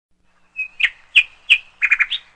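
A bird chirping: short, sharp, high calls repeated about three times a second, with a quick double chirp near the end.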